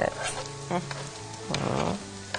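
Onions and green peppers sizzling in oil in a frying pan as chopped parsley and garlic are tipped in from a wooden cutting board.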